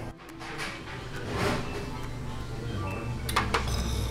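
Background music with steady sustained tones, and a few light clicks about three seconds in.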